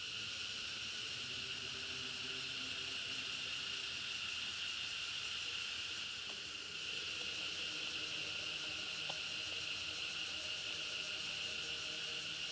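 Steady, high-pitched insect chorus droning continuously, with no break.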